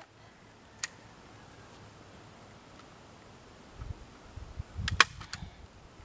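Staple gun firing staples through netting into a wooden fence post: one sharp snap about a second in, then a louder snap near the end followed by a lighter one.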